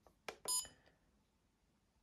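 usogood TC30 trail camera's menu button pressed with a click, followed by a short electronic beep confirming the menu selection.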